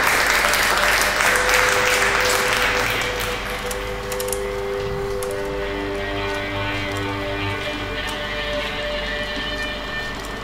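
Audience applauding, fading out about three seconds in, as outro music with long held notes comes in and carries on.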